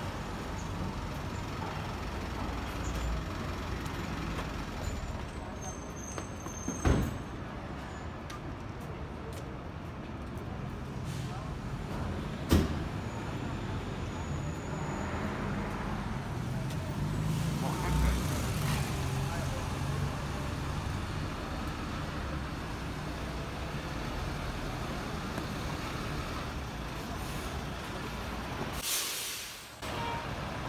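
Street traffic: a steady low rumble of passing vehicles, with a few sharp knocks spread through and a brief hiss near the end.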